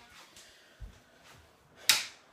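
Quiet handling noise with a soft low thump about a second in, then one sharp click near the end as a room light is switched on.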